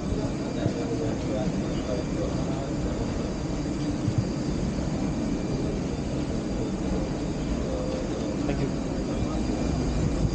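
Steady rumble of a parked airliner's running machinery at the cabin door, with a faint high whine held through it and brief murmurs of voices.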